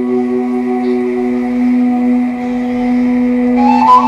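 Romanian caval (long duct flute) playing a slow melody of long held notes over a steady low drone. Higher, louder notes come in near the end.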